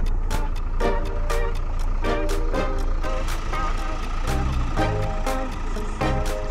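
Background music with a steady beat and a melody, over a low steady rumble.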